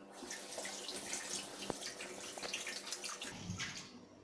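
Kitchen tap turned on and running into a stainless steel sink, water splashing over hands being washed under it, then shut off near the end.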